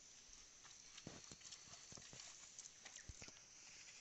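Near silence, broken by faint scattered taps and wet rustles as hands rub masala paste onto a whole fish on a banana leaf.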